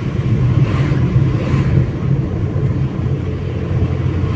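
Steady low road and engine rumble heard inside the cabin of a car driving on a highway.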